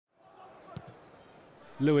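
Faint stadium crowd murmur with a single sharp thud of a football being kicked about three quarters of a second in. A male commentator's voice comes in near the end.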